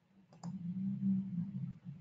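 A couple of sharp computer-mouse clicks about half a second in, followed by a steady low hum.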